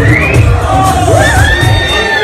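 Loud dance music with a heavy, regular beat, with a crowd cheering and whooping over it. One high voice holds a long call through the second half.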